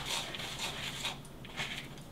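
A spoon stirring dry brownie mix of flour, cocoa powder, sugar and chocolate chips in a mixing bowl: quiet, soft scraping and rustling.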